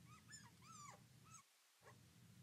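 Faint squeaks of a marker drawn across a glass lightboard: several short, high squeaking tones that slide up and down, mostly in the first second.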